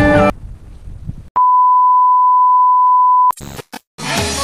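A steady electronic beep at one unchanging pitch sounds for about two seconds, starting about a second and a half in. It follows music that cuts off at the very start.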